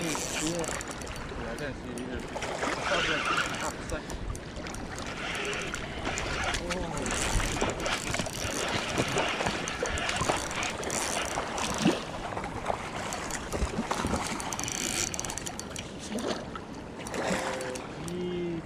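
Shallow water splashing and lapping at a rocky shoreline, with scattered small knocks of handling noise and indistinct voices in the background.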